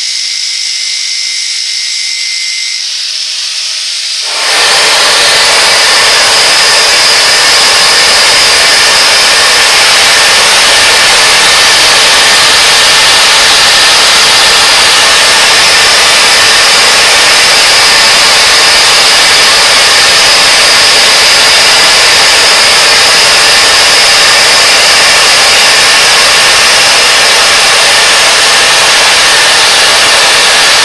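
A grinder whining against the turning crankshaft journal, roughening it before spraying; about four and a half seconds in, a loud steady hiss of a powder flame-spray torch starts up and runs on as it sprays the soft bond-coat powder onto the WSK125 crankshaft journal.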